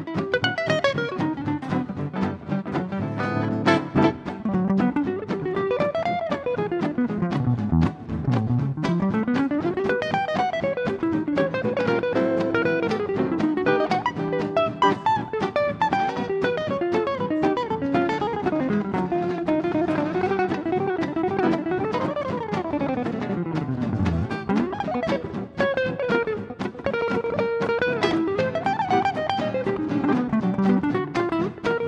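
Gypsy jazz played live on guitars: Selmer-Maccaferri-style acoustic guitars and an archtop jazz guitar. A lead guitar plays a solo with fast runs that sweep down and back up over the rhythm guitars' chords.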